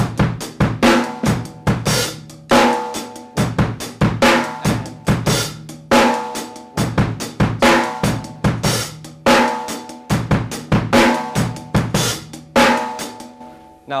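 Drum kit playing a rock groove: steady sixteenth notes on the hi-hat, snare on two and four, and bass drum, with the hi-hat opened on the 'e' of beat three so it rings briefly. The pattern repeats about every two seconds.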